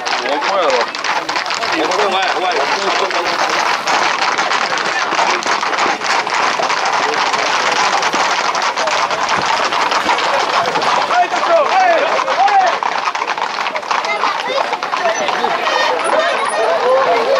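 Clatter of many hooves and running feet on asphalt as a tight group of Camargue horses moves at speed with runners alongside. Over it comes continuous shouting and calling from the crowd, with louder calls standing out about two-thirds of the way through.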